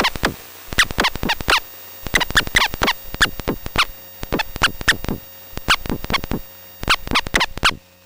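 Live electronic noise music: rapid, steeply falling electronic chirps come in dense clusters of several. The clusters repeat roughly once a second with short gaps between them, and the sound has a scratchy, stuttering character.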